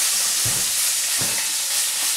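Pork sausage sizzling in a frying pan, a steady crackling hiss, with two brief low thuds about half a second and a second and a quarter in.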